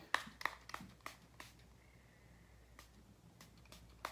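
Makeup spray pumped from a small hand-held bottle onto the face: a quick run of short, faint spritzes, several in the first second and a half and another run near the end.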